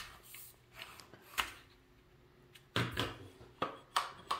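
The two tube sections of a trimmer caddy being handled and slid together, with a few light knocks and faint scraping.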